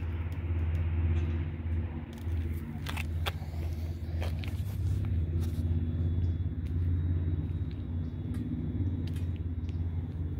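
Ford Coyote 5.0 V8 in a Factory Five Cobra replica idling steadily through its side exhaust, a low, even note. A few light clicks come through about three and four seconds in.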